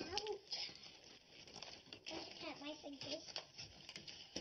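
Stiff card being cut with scissors and handled, rustling and crinkling with small clicks. A child's voice comes in briefly at the start and again in the middle.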